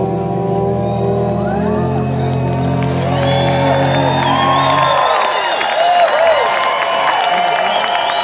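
An amplified bluegrass band's final chord ringing out and stopping about five seconds in, while the crowd cheers and whoops over it and on after it.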